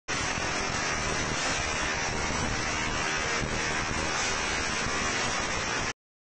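Tesla coil arcing: a steady, loud, noisy electrical discharge that cuts off abruptly just before the end.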